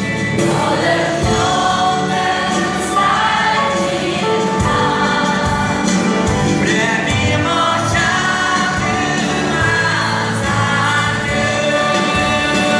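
A large choir singing a Christian praise song with a live band, many voices holding long sung notes over a steady beat.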